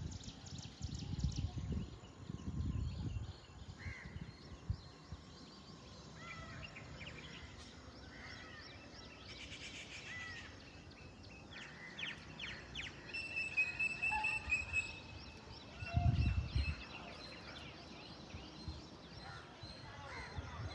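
Birds calling and chirping in open hillside scrub, short repeated calls with one brief held note about two-thirds of the way through. A few low rumbles of wind on the microphone.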